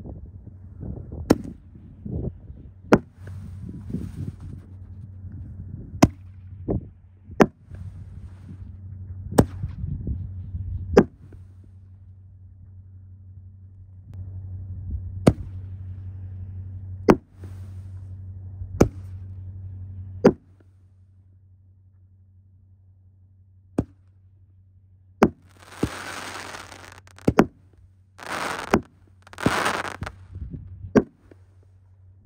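Winda Neon Beef 5-inch canister fireworks shells being fired in succession: a string of sharp booms from lift charges and aerial bursts, one every second or two, with a stretch of crackling near the end.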